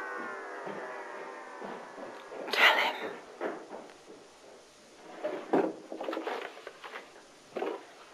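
A musical chord fades out, then a loud clatter about two and a half seconds in, followed by several shorter knocks and bumps of household things being handled and moved about in a small room.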